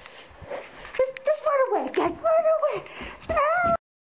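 A person's high, wavering wordless cries and whimpers, several in a row with the pitch bending up and down, cut off suddenly near the end.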